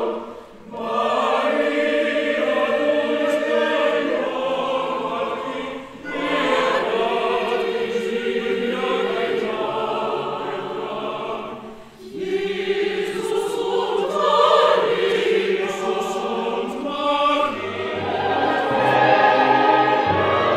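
Large mixed choir singing a Christmas piece in long phrases, with short breaks just after the start, at about six seconds and at about twelve seconds. Near the end the orchestra comes in underneath with low sustained notes.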